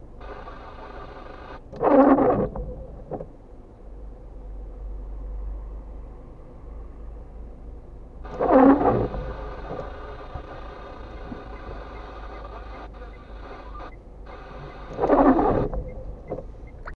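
Windscreen wipers on intermittent sweeping across wet glass three times, about six and a half seconds apart, each sweep a short loud rubbing of the blades. A steady hum runs underneath from the stationary car.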